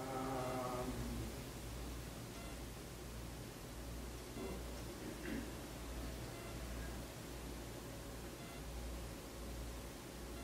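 Quiet room tone with a steady low hum, and a brief faint voice sound at the very start.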